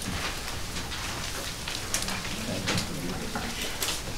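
Papers rustling and small clicks and knocks of people shifting around a conference table, a steady crackle with scattered sharper ticks.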